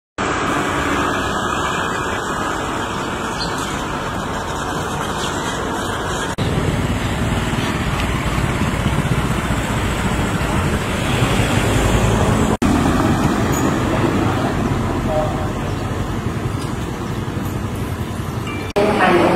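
Outdoor street ambience: steady road traffic noise, a continuous rushing din, broken by two abrupt cuts about a third and two-thirds of the way through.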